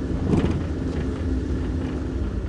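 A car driving slowly, heard from inside the cabin: a steady low engine and road rumble with a constant engine hum.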